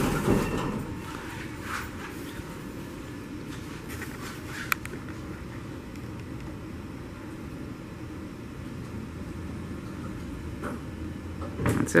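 Otis hydraulic elevator's sliding doors closing at a landing, over a steady low hum, with one sharp click about five seconds in.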